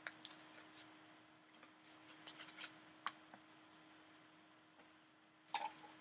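Faint crinkling and ticking of an Alka-Seltzer tablet packet being torn open by hand, a flurry of small clicks over the first three seconds.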